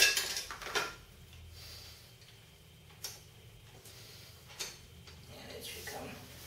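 Small metal parts clinking as a long bolt and reflector bracket are slid into place at the front of a folding bicycle: a quick cluster of clicks in the first second, then mostly quiet with two single clicks later.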